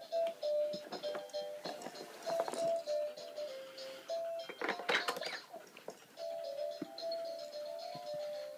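A simple electronic tune of clean beeping notes plays from a baby's push-along activity walker toy. Knocks and clatter of the toy being handled break in, loudest about five seconds in.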